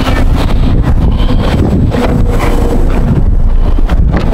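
Wind buffeting the microphone outdoors: a loud, steady, low rumbling roar.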